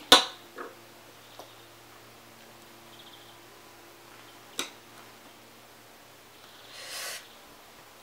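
A sharp tap right at the start and a smaller one about four and a half seconds in as small paintbrushes are set down on a table, with a short soft swish near the end over a faint steady hum.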